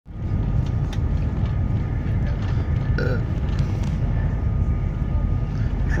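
Steady low rumble of a moving passenger train, heard from inside the carriage, with a faint steady whine above it.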